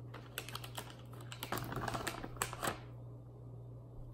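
Plastic packaging of sliced deli meat crinkling and crackling as slices are pulled from it, a dense run of small crackles lasting about two and a half seconds and loudest in the second half.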